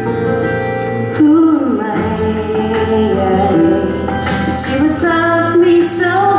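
A woman singing into a microphone over instrumental accompaniment. The accompaniment holds steady chords, and her voice comes in about a second in.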